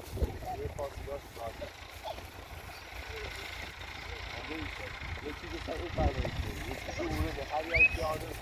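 People talking quietly outdoors, with wind rumbling on the microphone.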